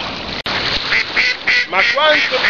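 Water lapping on the shore until a brief dropout about half a second in. Then ducks start quacking in a quick run of short calls, several a second.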